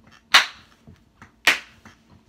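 Two loud, sharp hand claps about a second apart, in a small room.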